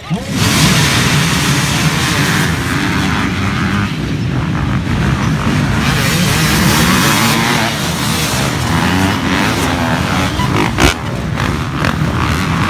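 A pack of off-road dirt bikes revving hard together, many engines at once, starting suddenly and holding loud and steady. A single sharp click comes shortly before the end.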